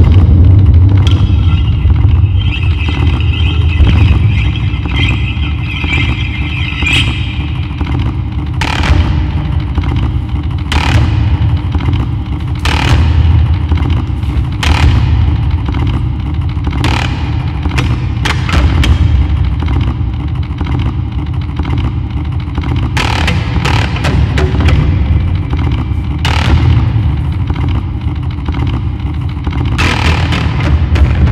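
Amplified daxophone played live: a low, steady rumbling drone with sharp knocks and scraped strokes every couple of seconds, and a wavering high tone over it in the first several seconds.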